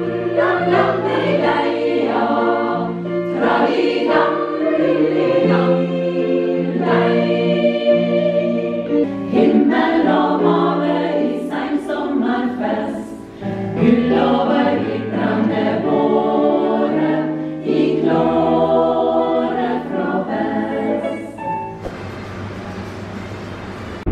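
A women's choir singing a song in parts, held notes moving in phrases, with a short break between phrases about halfway through.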